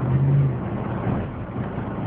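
Supercharged Jeep Grand Cherokee SRT8 V8 engine running under way, heard from inside the cabin with road noise. A steady low engine note holds for about half a second, then eases into a duller rumble.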